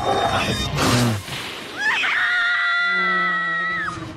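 Film soundtrack: a harsh, noisy burst of bear growling, then one long high scream that rises and is held for about two seconds before cutting off near the end, over a low steady musical tone.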